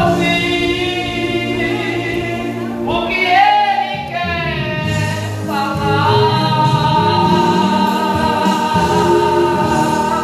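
Gospel hymn sung by a man into a microphone, with long held notes over a steady low accompaniment.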